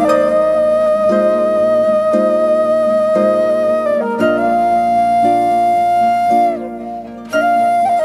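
Wooden flute playing long held notes over plucked harp notes, in a traditional Irish style tune. The flute breaks off briefly near the end before taking up a new note.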